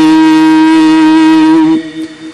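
A long steady held note of sung Gurbani kirtan, the end of a hymn line, that stops sharply about 1.75 s in, leaving only a faint remainder.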